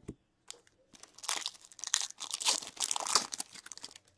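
Foil hockey-card pack being torn open and crinkled in the hands: a few light ticks, then a dense crackling rustle from about a second in, lasting about two and a half seconds.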